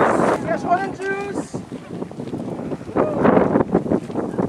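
Wind buffeting the microphone, cutting off abruptly about a third of a second in. Then people's voices, with a short drawn-out call about a second in and more voices around three seconds.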